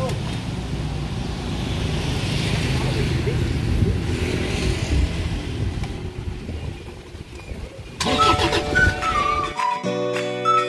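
Low rumble of vehicle engines and street traffic. About eight seconds in, background music starts, a flute-like melody over plucked notes.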